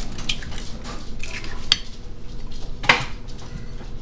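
An egg being cracked into a glass mixing bowl: a few light clicks and knocks against the bowl, the sharpest about three seconds in.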